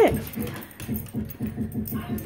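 A dog playing with a large ball on a hardwood floor, making a quick, even run of short sounds, about six a second.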